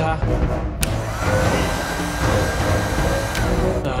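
Handheld electric heat gun switched on with a click about a second in; its fan motor whines up and runs steadily with a rush of air, then is switched off with a click shortly before the end.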